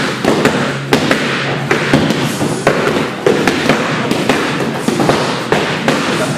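Boxing gloves striking focus mitts in pad-work combinations: a quick, uneven run of sharp smacks, one to two a second.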